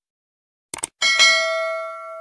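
Subscribe-animation sound effects: a quick double mouse click just under a second in, then a bright notification-bell ding at about one second that rings on and fades away.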